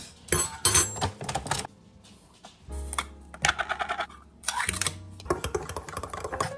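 Metal utensil clinking and scraping against a ceramic bowl in four runs of rapid strokes while stirring, over background music.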